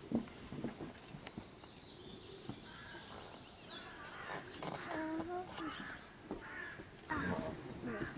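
Low, indistinct human voices on and off, with birds calling in the background.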